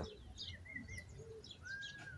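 Faint wild birds calling: scattered short high chirps and two thin whistled notes, one about half a second in and a longer one near the end, over a low background rumble.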